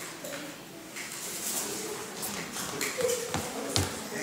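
Quiet voices murmuring in a hall, with scattered rustling and two sharp knocks near the end.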